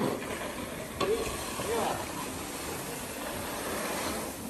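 Rice grain being pushed and spread across a concrete floor with wooden rakes: a steady rustling hiss of grain sliding and pouring, with a sharper knock about a second in.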